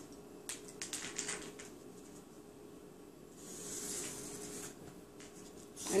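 Quiet handling on a cardboard cake board: a few light clicks, then a soft scratching hiss for about a second and a half midway, a felt-tip marker being drawn around a small round mirror.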